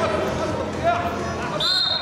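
Referee's whistle, one short high blast near the end, over voices shouting in a large hall.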